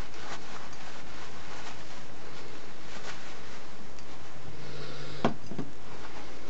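Steady background hiss with faint handling sounds on a work table; about five seconds in, a single sharp tap as a small glass vase is set down on a cutting mat.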